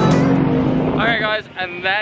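Background music ends on a held note. About a second in, a man starts talking over faint vehicle noise.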